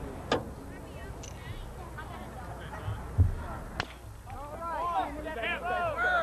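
Two sharp cracks on a baseball field, one just after the start and one near four seconds in, with a low thump just before the second. Shouting voices follow in the last seconds.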